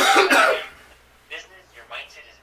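A man clearing his throat once, a short loud rasp lasting about half a second, followed by faint speech in the background.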